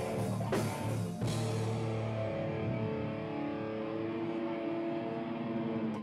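Live rock band with electric guitar and drum kit playing. The drum hits stop about a second in, a chord rings on steadily, and the sound cuts off suddenly at the end.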